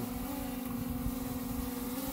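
DJI Air 3 drone hovering close overhead, its propellers giving a steady hum that lifts slightly in pitch a moment in.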